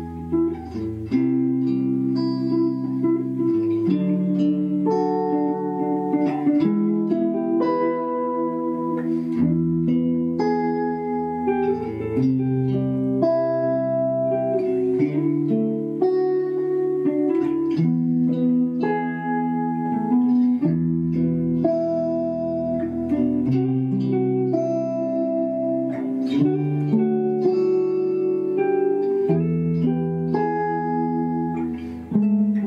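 Several electric guitars playing together: a chord accompaniment cycling through E major, C major and D major, changing every couple of seconds over a low bass line, with a single-note improvised melody on top built around a held pivot note, the E that runs through all three chords.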